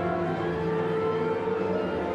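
Full symphony orchestra of strings, winds and brass playing sustained chords, with a higher note held from about half a second in.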